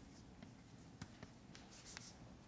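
Chalk writing on a blackboard, faint: a few light taps of the chalk about a second in and a brief scratch near the end.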